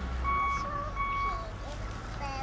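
A vehicle's reversing alarm beeping, one high steady note pulsing on and off about every three-quarters of a second and stopping about one and a half seconds in, over a low engine rumble.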